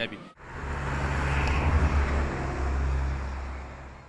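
Road traffic: cars driving past with a steady low engine hum and tyre noise, starting abruptly just after the start and fading out near the end.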